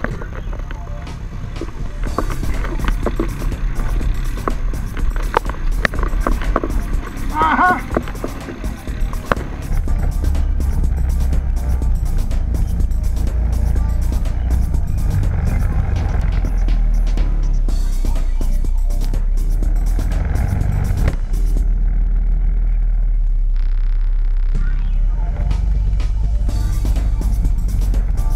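Quad-bike (ATV) engines in a deep-mud crossing, with clicks and voices in the first part. From about ten seconds in, a steady low engine drone as a quad drives along a muddy track, with music heard over it.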